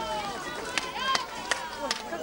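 A hand-held frame drum struck about four times at an even beat, with high voices calling and singing over it.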